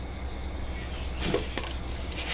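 Biryani pot of rice and chicken in liquid simmering on a gas stove: a steady low hum and hiss, with one short faint sound about a second and a quarter in.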